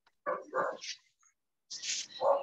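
A dog barking twice in quick succession, heard through a video-call participant's microphone.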